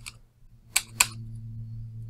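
Two sharp clicks of a computer's mouse or keys, about a quarter second apart, a little under a second in, over a steady low electrical hum.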